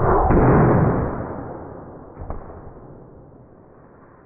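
Homemade PVC pneumatic cannon firing: a sudden loud rush of compressed air that fades away over about three seconds, with a faint knock about two seconds in.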